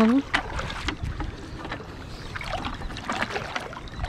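Shallow seawater lapping and splashing around rocks, with scattered clicks and knocks of fishing gear being handled.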